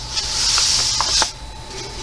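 A hand rubbing over the paper pages of an open coloring book: a papery rustle lasting just over a second, ending with two light ticks.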